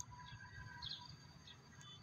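A few faint, brief bird chirps over a quiet outdoor background.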